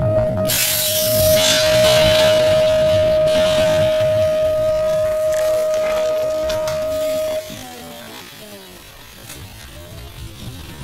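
BMX start gate signal: a long, steady electronic tone that cuts off about seven and a half seconds in, with the clatter of the gate dropping and the riders launching about half a second in. The audio is played back slowed down to a third of its speed.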